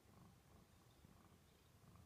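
Domestic cat purring faintly, a low rumble that swells and eases.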